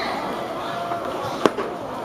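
A pitched baseball popping into the catcher's mitt: one sharp crack about a second and a half in, over a faint murmur of ballpark background noise.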